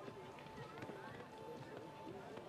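Faint background chatter of spectators' voices, with soft thuds of a horse's hooves cantering on sand.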